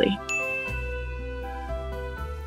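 A single bright ding sound effect, struck just after the start and ringing on as one high tone that slowly fades, over soft background music.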